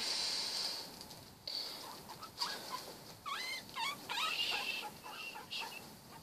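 Guinea pigs squeaking: a quick run of short, high squeaks that slide up and down in pitch, about halfway through, with fainter chirps before and after.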